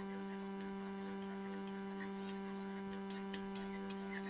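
Steady low electrical hum, a mains-type buzz picked up in the recording, with a few faint scattered ticks.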